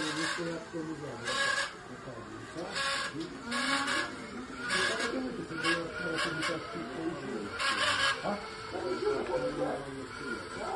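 Indistinct voices of people talking in the background, with about seven brief noisy rushes scattered through it.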